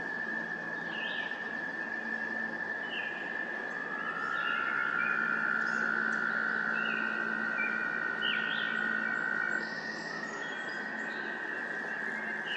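American toads trilling in chorus: one long, steady, high trill throughout, joined by a second, slightly lower trill from about four seconds in until nearly ten seconds. Short bird chirps come now and then above them.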